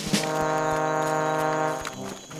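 Soundtrack music: a brass fanfare, one long held brass chord that drops away shortly before the end.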